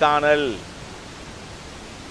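A man speaking in Tamil, his last word drawn out and falling in pitch, then about a second and a half of steady background hiss.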